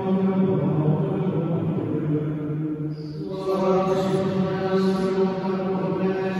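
A man's voice chanting a liturgical prayer mostly on one reciting note, with a short break for breath about three seconds in.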